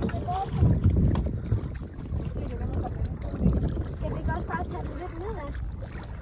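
Water sloshing around a wire-mesh fish trap held at the surface beside a boat's hull, over a low wind rumble on the microphone, with faint voices.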